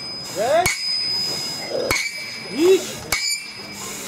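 Sledgehammer blows driving a block along a steel track, each a sharp metallic clang that rings on briefly; three strikes about a second and a quarter apart.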